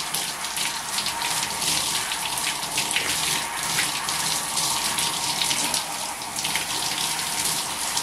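Handheld shower head spraying water onto a man's hair over a bathtub: a steady rush of running water.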